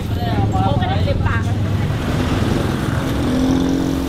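Road traffic: car and motorcycle engines running with a steady low rumble, and a vehicle passing about two seconds in. Voices are heard in the first second or so.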